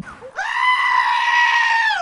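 A goat bleating: one long, loud call held at a steady pitch, starting about a third of a second in and dropping slightly at the very end.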